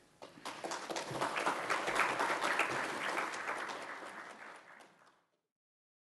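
Audience applauding, building over the first two seconds, then tapering and cut off about five seconds in.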